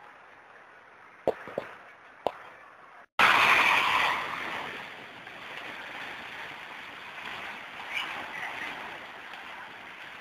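Muddy floodwater rushing, faint at first with three sharp clicks, then after an abrupt cut about three seconds in a loud rush of water that eases within a couple of seconds into a steady rush.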